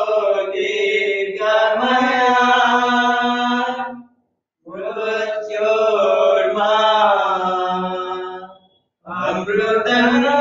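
A voice chanting a devotional mantra in long, held phrases of about four seconds each, with short pauses for breath between them; a new phrase begins near the end.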